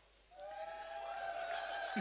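Guests' high-pitched held cheering calls start about a third of a second in, with two voices overlapping on steady pitches.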